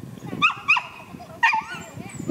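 Three short, high-pitched dog yips: two close together about half a second in and a third about a second later.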